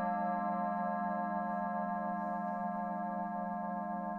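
Several singing bowl notes ringing on together after being struck, with a slow pulsing waver, dying away gradually.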